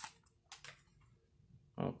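Two brief crinkles of a foil trading-card pack wrapper being pulled off the cards, about half a second in.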